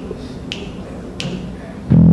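Finger snaps counting in the tempo, evenly spaced, over a low room hum; the big band comes in on the beat at the very end.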